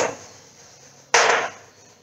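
Chalk writing on a blackboard: a short scratchy stroke at the start and a louder, sharper stroke about a second in.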